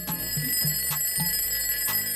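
Alarm clock ringing steadily, an alarm-clock sound effect from a video-editing transition.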